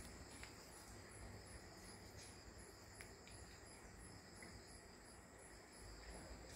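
Near silence: quiet room tone with a faint high-pitched chirp repeating evenly, about two to three times a second, as of a cricket chirping, over a faint steady high whine.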